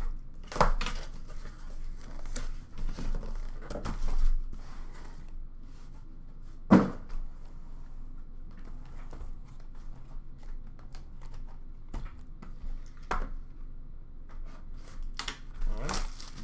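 A cardboard shipping case being opened and small card boxes lifted out and stacked: rustling and scraping of cardboard with scattered knocks, the sharpest about seven seconds in.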